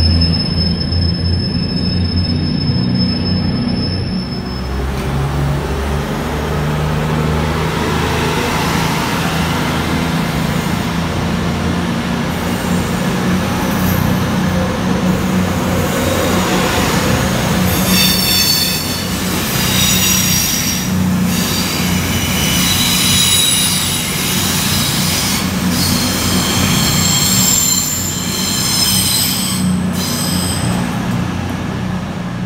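Diesel multiple-unit trains at a platform: a Class 150 Sprinter for the first few seconds, then a CrossCountry Voyager whose underfloor diesel engines keep up a steady low hum. From a little past halfway, high-pitched metallic squealing from the train's wheels comes and goes repeatedly over the hum.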